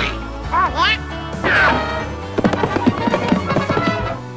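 Donald Duck's squawking voice in two short bursts, then a quick, irregular run of sharp pops and cracks lasting about a second and a half, over a cartoon music score.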